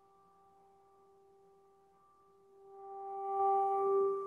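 A steady pitched tone, one held note with overtones, faint at first and swelling louder from about two and a half seconds in.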